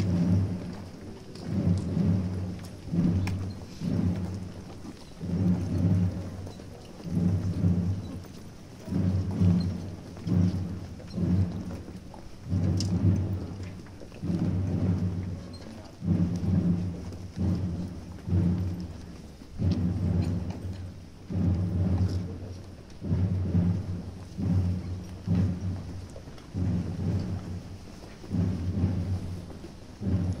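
Deep, muffled drum beating a slow, steady processional beat, about one stroke a second.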